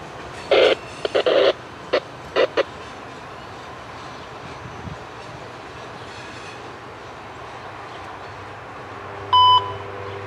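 Loaded ballast cars of a freight train rolling by, a steady rumble of wheels on rail. Several short, loud bursts come in the first few seconds. Near the end a short steady beep comes over a radio scanner as the trackside defect detector comes on the air.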